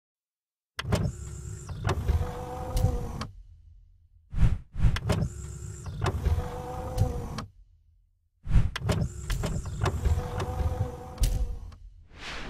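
Intro sound effects: three mechanical whirring and clunking runs, each about three seconds long, with sharp clicks. They come at the start, middle and end, with pauses between them.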